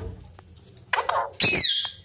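Pet parrot calling: a short, raspy burst about a second in, then a loud, high squawk that falls in pitch.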